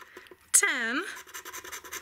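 A coin scratching the silver coating off a paper scratch-off lottery ticket in many quick strokes. The scraping pauses briefly for a spoken word about half a second in.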